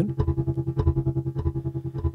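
Eurorack modular synth output: a Morphagene tape-reel sample playing a sustained guitar-like tone, its loudness pulsing rapidly, about seven times a second, under amplitude modulation from a Synthesis Technology E440 filter self-oscillating at sub-audio rate as an LFO.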